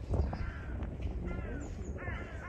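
A bird giving a few short calls a little over a second in, over a steady low background rumble.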